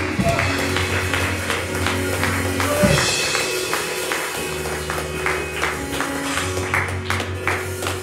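Live church band music: held keyboard chords over a steady low bass, with a regular beat of hand claps about three a second.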